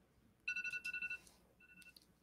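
Electronic timer alarm beeping: a quick run of high beeps about half a second in, then a shorter beep near the end, signalling that the set time has run out.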